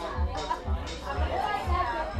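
Electronic dance music from a live DJ set, with a steady four-on-the-floor kick drum at about two beats a second, and people talking close by over it.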